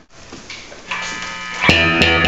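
1960 Fender Telecaster played through a 1960 Fender Twin tube amp. A held chord cuts off at the start, and after a brief hush single notes are picked quietly and build to a sharp, bright note stab near the end.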